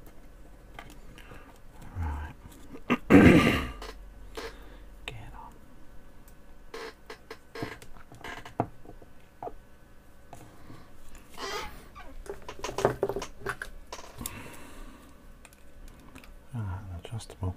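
Small parts being handled and fitted by hand: light scattered clicks and taps as nuts and screws go onto a small motor mount. A brief louder burst of noise comes about three seconds in, and quiet muttering is heard a few times.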